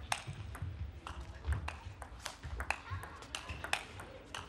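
Table tennis rally: the ball clicking sharply off the rackets and bouncing on the table, a quick, irregular run of several hits each second.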